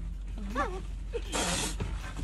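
A frightened man's short whimpering cry, then about a second later a brief breathy hiss, with camels' heads right at the open car window.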